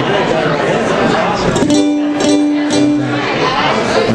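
A ukulele strummed a few times from about a second and a half in, its chord ringing between the strums.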